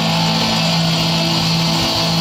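Live rock band with electric and acoustic guitars holding a steady, sustained chord, without vocals.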